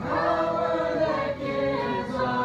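Congregation singing a worship hymn together, led by a woman's voice with acoustic guitar accompaniment; a new phrase begins at once, with long held notes.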